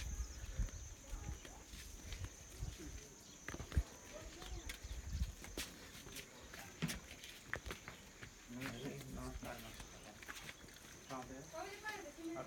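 Steady high-pitched drone of insects, with scattered clicks and footsteps of someone walking. Faint voices are heard in the second half.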